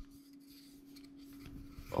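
Faint rustling and rubbing of plastic packaging as hands unwrap surf fins, over a faint steady low hum.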